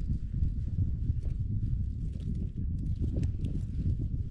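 Wind buffeting the microphone on open ice: an irregular low rumble, with faint scattered small clicks over it.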